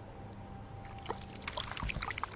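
A hooked fish splashing at the water's surface beside a kayak, with a burst of irregular splashes starting about a second in.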